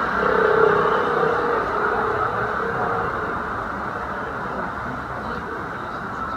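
Steady street noise, most likely road traffic, swelling about half a second in and slowly fading.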